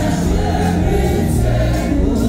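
Church congregation singing a French worship song with a leader on microphone, over an amplified band with a strong, steady bass line.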